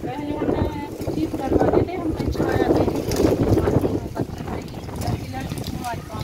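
Speech: an elderly woman talking, over a low wind rumble on the microphone.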